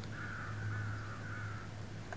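A crow cawing, three calls in quick succession, over a steady low hum.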